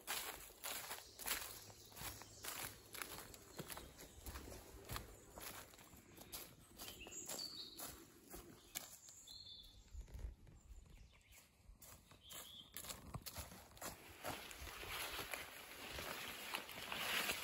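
Footsteps on the dry leaf litter of a forest path: a faint, irregular run of light steps, thinning out in the middle of the stretch.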